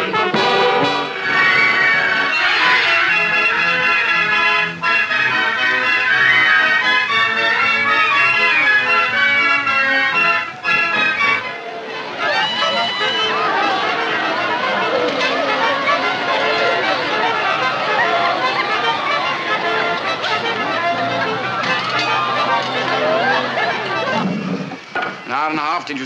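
Brass band playing a tune, with euphonium and drums, that cuts off about eleven seconds in. A crowd of many voices chattering at once follows.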